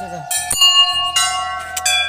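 Hanging brass temple bells struck twice by hand, about two-thirds of a second apart, each strike ringing on with several overlapping tones.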